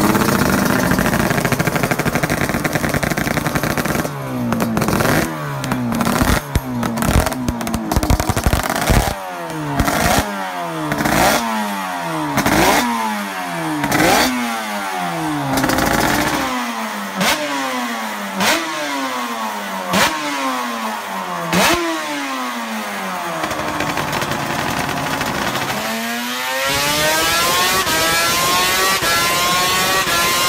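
Suter MMX 500 two-stroke V4 racing engine revved hard in a long series of quick blips, each one a sharp rise in pitch falling back. Near the end it holds one long, steady climb in pitch under load on a dynamometer.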